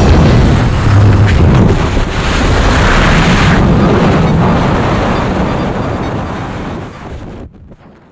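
Freefall wind rushing over the camera microphone as the tandem pair exit the aircraft and fall, a loud steady roar that fades away near the end.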